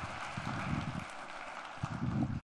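Hard-soled shoes stepping on wooden stage steps and floor, in irregular low thuds, over a steady hiss of room noise.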